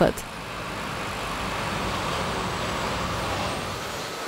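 Milk tanker truck driving past, its engine and tyre noise steady, swelling a little around the middle and fading toward the end.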